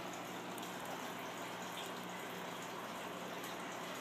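Steady, even background hiss with a faint low hum and no distinct events: room tone.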